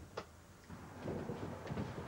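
A Blackpool Coronation tram pulling up at a stop: a single sharp click, then a low rattling rumble.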